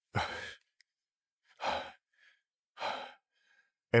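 A man sighing heavily: three long breaths, each about half a second, roughly a second and a half apart.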